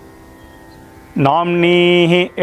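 A man chanting a Sanskrit tarpanam mantra. After a short pause with only faint background hum, he holds one syllable at a steady pitch from a little over a second in.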